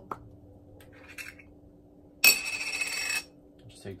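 A glass spice jar of red pepper flakes being handled: a sharp clink about halfway through, then about a second of rattling with a metallic ring.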